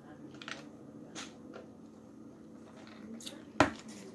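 Quiet sipping through a straw from a paper fountain-drink cup, with a few faint clicks. About three and a half seconds in, the cup is set down on the table with one sharp thump, the loudest sound here.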